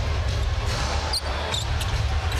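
A basketball being dribbled on the hardwood court under steady arena crowd noise, with a few short high squeaks of sneakers on the floor.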